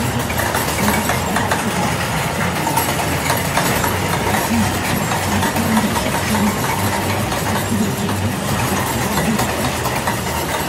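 Bottle unscrambler and capsule counting line running: a steady low machine hum with continuous light rattling and clicking.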